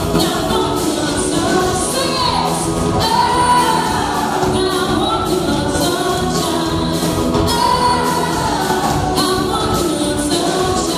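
Live band playing a song with singing.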